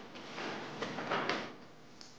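Paper rustling as bound documents are handled and leafed through on a desk, in a few quick bursts within the first second and a half.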